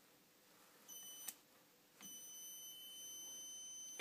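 Pulse-width-modulator-driven step-up transformer circuit oscillating: a faint high-pitched electronic whine that sounds briefly about a second in, cuts off with a click, then comes back and holds steady as the bulb lights.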